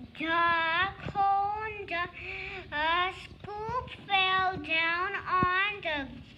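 A young child's high voice in a sing-song delivery, with several long held notes of about half a second to a second each and short breaks between them.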